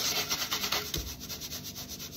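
Dry powder sliding out of a tipped cup and pouring onto a wet sponge: a dense, grainy rasping hiss, loudest in the first second and easing off after.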